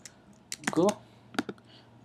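Computer keyboard keystrokes: a few separate key taps spread across the two seconds, typing a short word.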